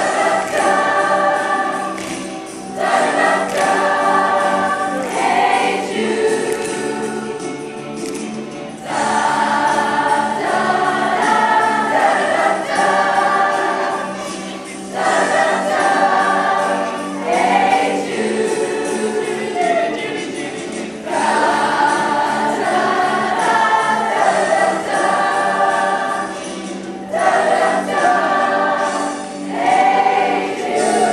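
Large mixed high-school choir singing a pop number together, the sound swelling and easing in phrases about every six seconds.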